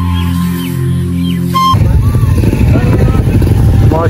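Background music with held tones that cuts off abruptly after about a second and a half, giving way to a small motorcycle engine idling close by with a rapid low pulsing.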